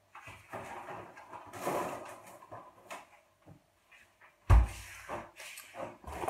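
Frozen food packs going into a freezer, with rustling and small clicks, then the freezer door shut with a heavy thump about four and a half seconds in.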